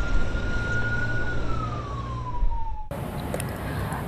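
An emergency-vehicle siren holding one steady tone, then falling in pitch for about a second and a half and cutting off suddenly about three seconds in, over a low engine rumble from heavy vehicles.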